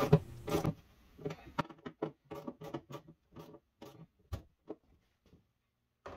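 Ratchet wrench tightening a bolt on a freezer drawer's slide rail: a run of quick clicks, about five a second, that stops near the end.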